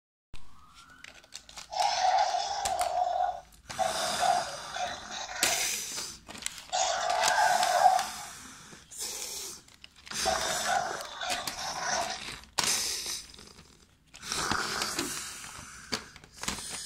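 A series of raspy dinosaur roars and growls voiced for fighting toy dinosaurs: about eight loud bursts of one to two seconds each, with short pauses between them.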